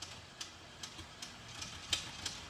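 Faint low rumble of a V8-swapped Chevy S10 pickup moving off slowly, with sharp regular ticks about two to three times a second.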